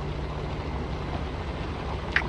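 Steady low rumble under a soft, even hiss, with no distinct event: the background ambience of an audio drama.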